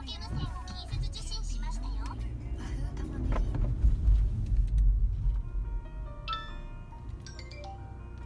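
Japanese TV commercial sound playing through a car's speakers: a voice in the first few seconds, then a short musical jingle near the end. Underneath is a low rumble from the car that swells in the middle.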